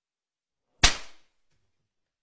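A single sharp slap a little under a second in, a hand being struck, with a short fading tail.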